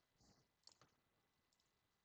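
Near silence with a few faint clicks in the first second, the clicks of a computer mouse.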